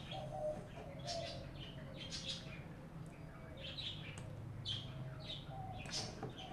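Faint bird chirps in the background: short, scattered high calls repeating every second or so.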